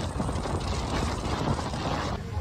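Strong wind buffeting a phone microphone: a dense, rough, crackling rush of noise.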